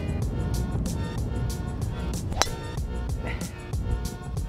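Background music with a steady beat, and a little past halfway a single sharp crack of a golf driver striking a teed ball.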